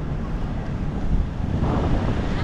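Wind buffeting the camera microphone, a steady low rumble.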